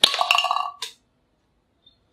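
A toy pistol fires with a sharp snap, and a plastic target cup is hit and clatters over with a buzzing rattle lasting just under a second. It ends in a single knock.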